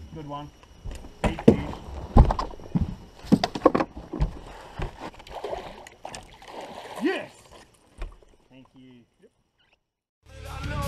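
Water splashing and sharp knocks on a bass boat's deck as a hooked bass is brought aboard in a landing net, with a few short grunts. It all stops abruptly about nine seconds in.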